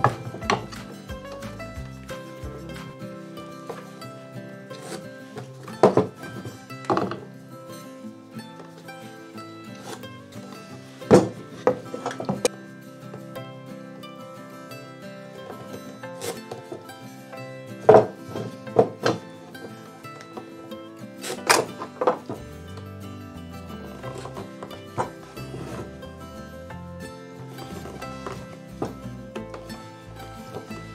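Background music with steady held tones, broken by about a dozen short, sharp knocks of hand tools set against a wooden block and tabletop while dice faces are being marked out.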